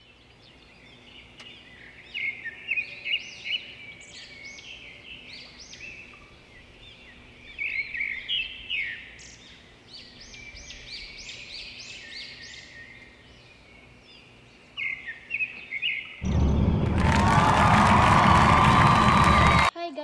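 Small birds chirping and singing in quick, repeated rising calls, in several bursts. Near the end a much louder, harsh sound runs for about three seconds and cuts off suddenly.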